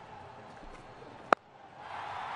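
A single sharp click just past halfway over faint, steady background noise; the background noise swells near the end.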